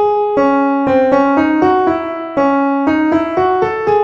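Piano playing a slow melody, about three notes a second, with a few notes sounding together.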